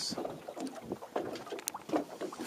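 Scattered light knocks and shuffling on a small boat's deck, with wind on the microphone.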